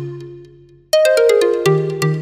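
Background music of clear, bell-like notes: a chord fading away, then a quick run of falling notes about a second in, and another chord near the end.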